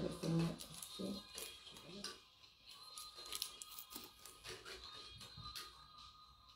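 Quiet handling of painting supplies on a paper-covered table: scattered small clicks and rustles as paint jars and a brush are picked up and set down, under faint background music.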